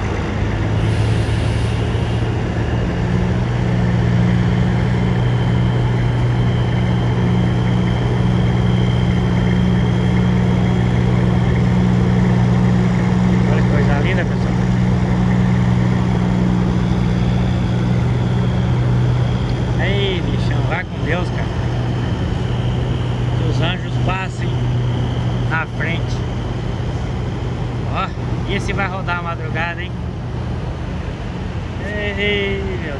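A Peterbilt semi-truck's diesel engine giving a steady, deep rumble as the tractor-trailer pulls slowly away, easing off over the last few seconds.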